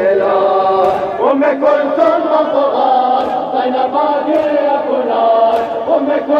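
A crowd of male mourners chanting a nauha (mourning lament) together in sustained, melodic lines, with a few sharp slaps from matam breaking through now and then.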